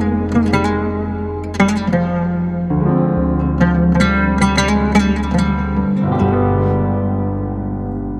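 Instrumental jazz-folk ensemble of oud, hollow-body electric guitar, Nord keyboard playing piano, and electric bass. Quick plucked melody notes run over long held bass notes that change twice, and the playing thins out toward the end.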